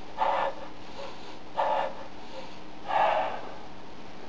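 A man's short, forceful breaths, probably through the nose: three of them, about a second and a half apart, as he bends forward working his belly.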